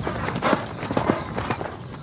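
A horse galloping on grass: a quick, uneven run of hoofbeats.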